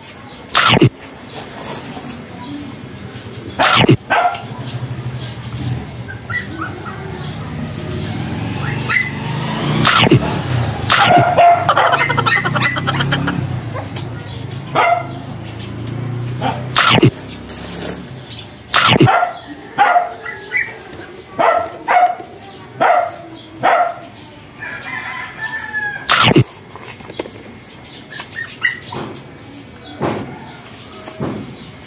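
Close-up eating sounds of fried pork leg being bitten and chewed, with sharp crunching snaps as the loudest events. A dog barks in short repeated bursts in the background, most often in the second half.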